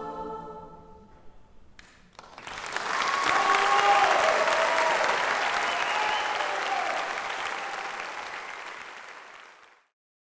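A large choir's final held chord dies away, and after a second of quiet the audience applauds, with some cheering and whoops. The applause peaks a couple of seconds later and then fades out just before the end.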